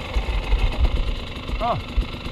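Dirt bike engines idling with an uneven low chug. A short call from a rider comes in near the end.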